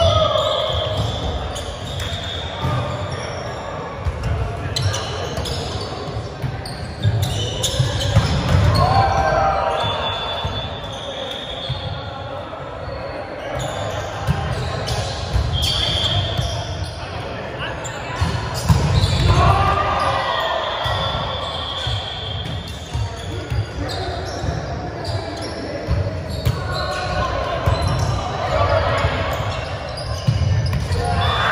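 Indoor volleyball rally on a wooden gym court: repeated thuds of the ball being struck, short high squeaks of sneakers on the floor, and players calling out, all echoing in a large hall.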